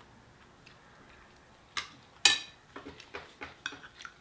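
Cutlery clinking against a glass dish: two sharp clinks about half a second apart near the middle, the second the louder with a short ring, then several lighter taps.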